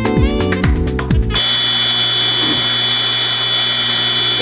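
Background music for about the first second and a half, then an abrupt cut to a Craftsman table saw running steadily, its motor and blade spinning at a constant speed.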